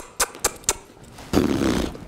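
A few quick, sharp smacks, then a rasping burst of air from a young Thoroughbred colt lasting about half a second as it is driven off to run. The burst is the loudest sound.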